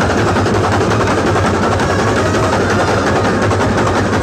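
Massed drums of a Kerala brass band set, snares and bass drums, playing a loud, unbroken rapid roll.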